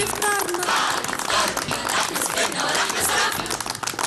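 Music with a woman singing, while a troupe of dancers clap their gloved hands along to it.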